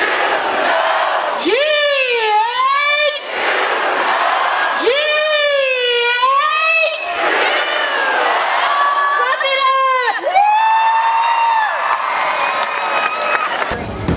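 Crowd of high school students in the stands chanting together in several long, drawn-out calls, with shouting and cheering between them.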